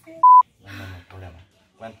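Censor bleep: one short, loud beep at a single steady pitch, about a quarter of a second long, near the start, followed by speech.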